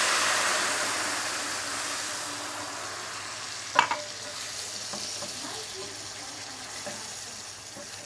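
White wine poured into a hot skillet of oil, garlic and tomato paste, hissing and sizzling loudly as it hits the fat, the sizzle slowly dying down as the wine deglazes the pan. A wooden spoon stirs and scrapes the bottom, with a single sharp knock a little under four seconds in.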